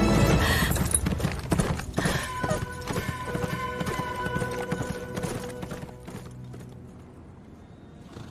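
A horse galloping away, its hoofbeats fading out about three-quarters of the way through.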